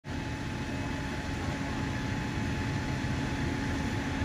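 Fire apparatus engines and pumps running steadily: a low rumble with a constant hum.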